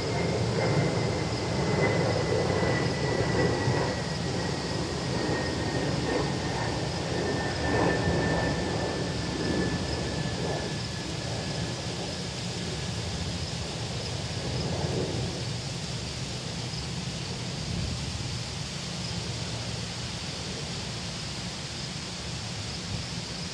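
Wind gusting through trees and rumbling on the microphone, easing off over the second half. A faint thin whistle slowly falls in pitch and fades out about two-thirds of the way through.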